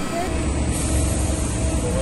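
Steady aircraft noise: a loud, even hiss over a deep rumble that grows heavier about a third of a second in, with faint voices under it.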